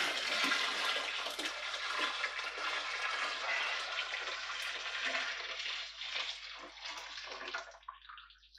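Liquid poured from a stainless steel pot into a plastic fermenting bucket: a steady splashing pour that thins out and tails off near the end.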